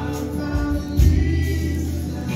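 Live worship music: women's voices singing over a band, with a heavy, sustained low bass underneath.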